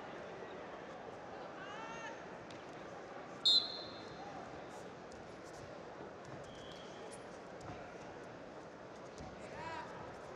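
A wrestling referee's whistle blows one short, sharp blast about three and a half seconds in, restarting the bout. Around it is the steady murmur of a large arena hall, with distant voices and scattered thuds from the mats.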